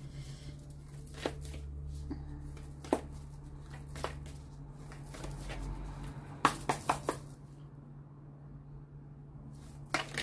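A deck of tarot cards being shuffled by hand: scattered soft taps and clicks, with a quick run of four sharper snaps about six and a half seconds in, over a low steady hum.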